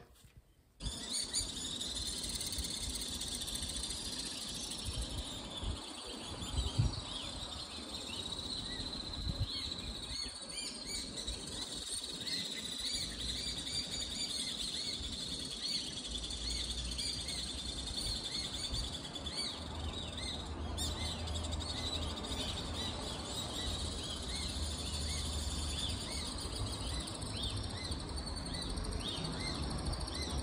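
Common swifts screaming in a dense, continuous chorus of short high calls. A low hum joins in about halfway through.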